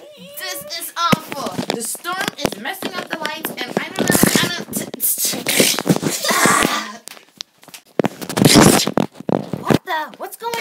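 Children's wordless voices, with cries and squeals, broken by three loud breathy hissing bursts about four, six and eight and a half seconds in.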